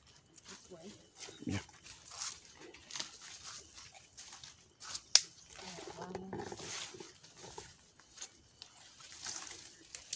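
Footsteps and brushing through dense leafy undergrowth on a narrow bush path, in many short rustling crackles. A single sharp click or snap about five seconds in is the loudest sound.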